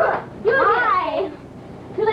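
A high-pitched voice makes one short call without clear words, its pitch rising and then falling, over a low steady hum.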